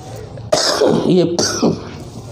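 A man coughing and clearing his throat close to a microphone, in two rough bouts: the first starts abruptly about half a second in, the second comes just before the end.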